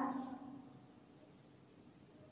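The fading end of a short voice sound during the first half-second or so, then near silence.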